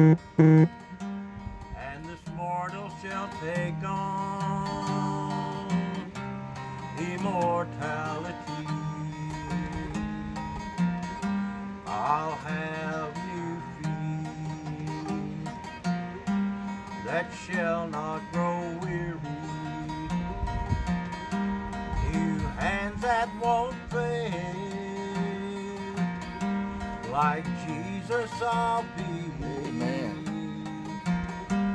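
Acoustic guitar strummed and picked in a slow country-gospel style, with sung phrases held every few seconds. A loud accent comes right at the start.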